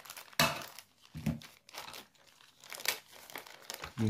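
Clear plastic packaging bag crinkling in irregular bursts as it is handled and opened by hand.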